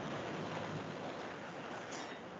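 Steady background noise, a hiss with a low rumble, from an open microphone on a video call; it comes in suddenly at the start.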